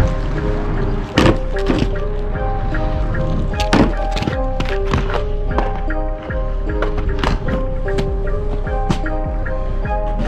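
Background music, over which inline skates knock against a PVC-capped wooden rail and the asphalt in a trick attempt that ends in a fall: sharp thuds, the loudest about a second in and near four seconds.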